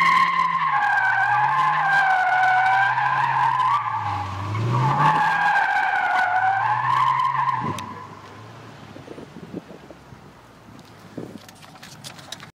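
A 2002 Chevrolet Corvette spinning doughnuts: its rear tyres squeal with a wavering pitch in two long stretches, broken by a short dip about four seconds in, while the V8 revs up and down beneath. About eight seconds in the squeal and the engine fall away, leaving only faint handling noise.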